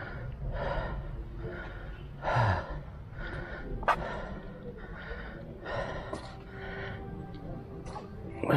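A man breathing hard and panting, out of breath from the stair climb, with a breath a little more often than once a second and a louder voiced gasp about two and a half seconds in. A single sharp click comes near the middle.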